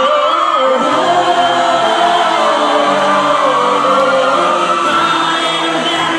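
Singing with musical accompaniment: a high vocal line holding long, slowly gliding notes over sustained lower tones.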